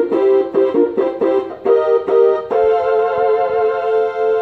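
Homemade keytar synthesizer playing a run of short repeated chords, then holding one chord from about two and a half seconds in.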